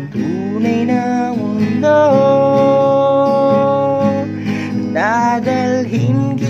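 Acoustic guitar strummed in a down-down-up-up-down pattern through G, Am and Bm chords, with a voice singing the refrain over it. The voice holds one long note in the middle, then starts a new phrase near the end.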